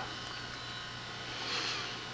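Philco 50-T702 vacuum-tube television set running, giving off a steady electrical hum and buzz.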